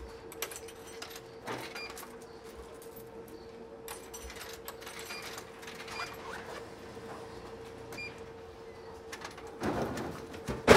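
Drinks vending machine humming steadily while coins are fed in, with scattered clicks and several short electronic beeps. Near the end a louder clatter comes as a bottle drops into the dispensing tray.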